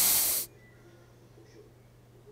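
A short, loud burst of breath hissing out through the nose: a stifled laugh held back behind a mouthful of water. It cuts off about half a second in, leaving only faint background noise.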